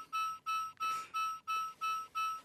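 Electronic beeping from a novelty finger shock-machine game: one steady beep tone repeated about three times a second while the machine picks a random player to shock.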